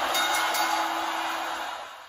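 Logo sting from a video intro: a sustained hissing whoosh with a steady low tone under it, fading away toward the end.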